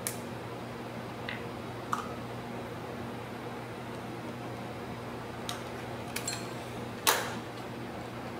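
A few sharp plastic clicks from a micropipette and a plastic culture tube being handled, over a steady low room hum; the loudest click comes about seven seconds in.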